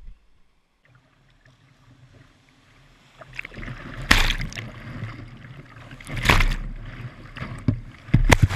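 Kayak running a river rapid: rushing whitewater that rises from faint to loud about three seconds in, with loud splashes about four and six seconds in as waves break over the bow and wash across the camera.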